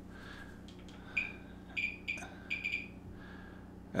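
Thermo Scientific RadEye B20 Geiger counter giving a few short, irregularly spaced chirps, one for each detected count. The sparse count rate shows that the ordinary ceramic plate on top blocks most of the uranium glaze's radiation.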